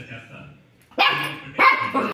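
English setter barking twice, sharply: once about a second in and again about half a second later.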